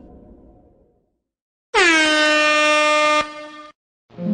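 Air horn blast, one held note about a second and a half long whose pitch drops briefly at the start and then holds steady, cutting off with a short tail.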